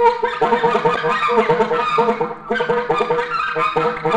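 Free-improvised alto saxophone: quick broken runs keep returning to one held note, with a brief dip in level about two and a half seconds in.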